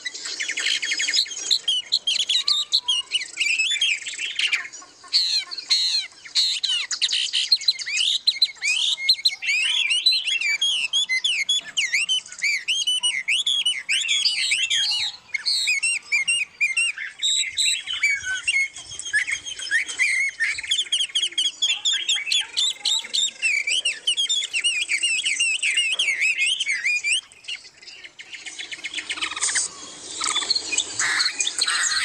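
Many small caged songbirds chirping and singing at once, a dense, continuous chorus of quick rising and falling notes that thins briefly near the end.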